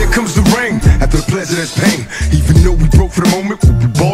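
Hip hop track playing: rapped vocals over a heavy bass beat.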